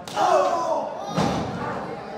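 A sharp smack at the start, then a heavier thud about a second in: a wrestler being kicked and going down on the wrestling ring's canvas. A shouting voice sounds in between.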